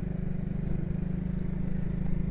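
Motorcycle engine running at a steady low speed while riding, a constant low engine note over road noise.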